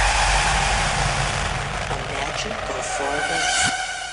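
Fairground din: a dense wash of noise with people's voices mixed in, slowly fading.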